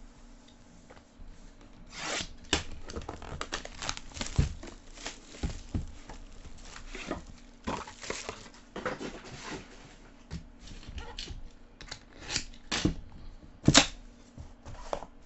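Plastic wrapping being torn and crinkled off a trading card box, with rubbing and clicks as the box is handled. A sharp knock, the loudest sound, comes near the end as the box lid is opened.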